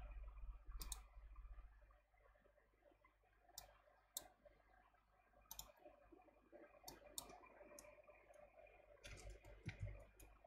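Faint, scattered computer mouse clicks, single clicks every second or so, with a short cluster near the end.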